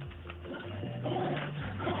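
An animal calling in several short, low phrases of about half a second each, with brief gaps between them.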